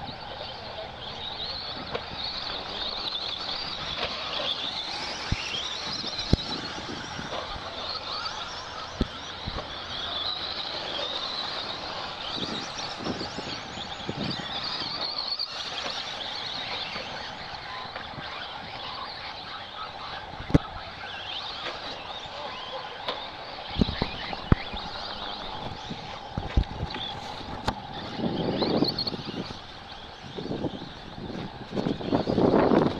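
A pack of electric RC racing trucks running on a dirt track: motor and gear whines rising and falling as the drivers go on and off the throttle, with sharp knocks from trucks landing jumps and striking the track. A louder burst of noise comes near the end.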